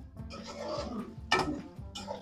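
Chicken being stir-fried (bhuna) in oil in a karahi: a sizzling, stirring hiss through the first second, then one sharp knock of the stirring spoon against the pan about a second and a half in. Soft background music runs underneath.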